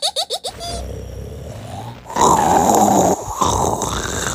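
A laugh trails off, and from about two seconds in comes a loud, rasping, growl-like vocal noise, a grunt or snore.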